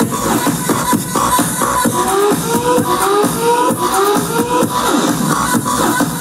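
Electronic dance music from a live DJ set played over a festival PA, with a steady beat and, midway, a synth line of short, repeated rising slides.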